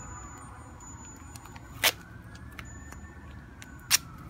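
Road-paving machinery running in the background: a low rumble with an engine note that slowly rises and then falls. Two sharp clicks stand out, one about two seconds in and one near the end.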